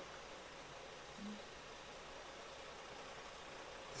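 Faint steady hiss of a quiet car interior waiting in slow traffic, with no distinct engine or traffic sound standing out.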